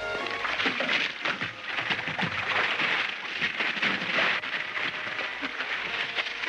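Water running and splashing in an overfull bathtub: a dense, steady rushing hiss broken by many small splashes. The last notes of music die away at the very start.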